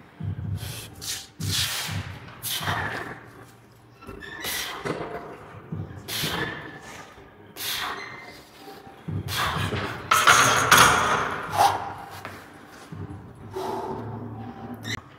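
A lifter breathes hard through a set of incline barbell bench presses, one sharp breath about every second with thuds from the bar. About ten seconds in there is a louder burst of noise as the barbell is racked.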